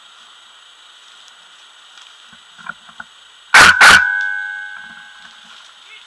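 Two loud, sharp bangs about a quarter second apart, a little past halfway, followed by a ringing tone that fades over about two seconds.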